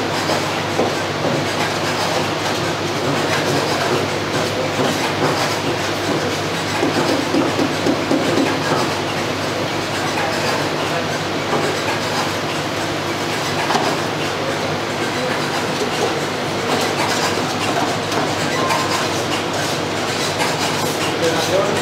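Electric cotton candy machine running steadily, its heated spinning head throwing out sugar floss as it is wound onto a stick: a constant mechanical hum with an even noise over it.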